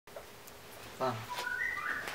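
A few high, whistle-like tones stepping between different pitches, starting about one and a half seconds in, preceded by a brief voice sound about a second in.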